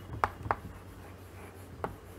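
Chalk writing on a blackboard: a few short, sharp strokes, two close together near the start and one near the end.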